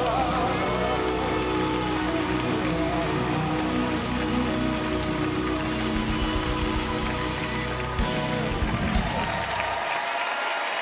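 Live gospel band holding the closing chord of a song while the audience applauds. There is a sharp final hit about eight seconds in, and the band's low end cuts off right at the end, leaving the applause.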